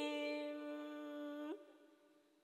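A singing voice holding one long, steady note that stops about one and a half seconds in.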